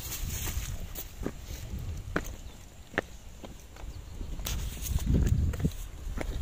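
Footsteps on loose rock riprap: irregular clacks and scrapes of shoes on stones, about one or two a second, over a steady low rumble.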